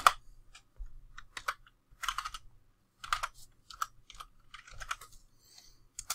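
Typing on a computer keyboard: a string of separate key clicks in small, irregular clusters, ending with a single sharper key press as the command is entered.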